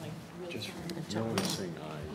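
Light clinks and knocks of small objects being handled on a table, with a sharp click or two near the middle, under quiet voices.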